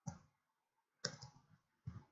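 Faint computer keyboard keystrokes: a single tap at the start, a quick cluster of taps about a second in, and another tap near the end.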